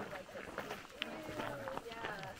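Faint talk of other people in the background, with footsteps on a dirt trail and a sharp click or step about a second in.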